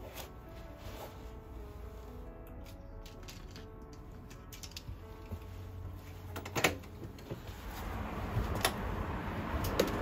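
Soft background music with a sharp metallic click about two-thirds of the way in, the front door's lock or latch being worked. Then a rising hiss of outside noise as the apartment door swings open.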